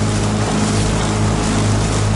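Small outboard motor on an aluminium launch running steadily at low cruising speed, a low even hum with a steady rush of water and air over it.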